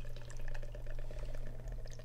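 Dark beer being poured into a glass, the foam fizzing with a fine, steady crackle.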